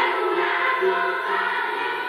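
Children's choir singing over music.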